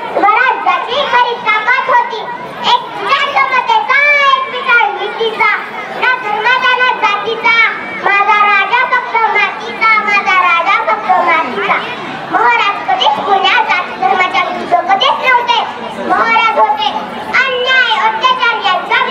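A young girl giving a speech in Marathi into a microphone, her high voice running on with only brief pauses.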